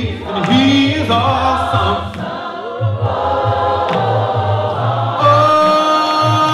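Unaccompanied gospel singing by a choir of voices, with a man leading on a microphone. Several voices hold a long, steady chord near the end.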